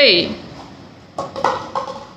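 Paper cups being set down while stacking a cup pyramid: three or four light taps in quick succession, starting a little after a second in.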